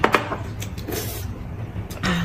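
Table sounds of eating soup: a sharp click of a spoon near the start, then soft sipping and slurping, over a low steady hum.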